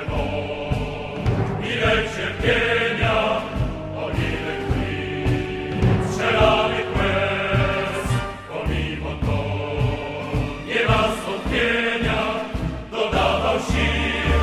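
Background music: a choir singing over instrumental accompaniment.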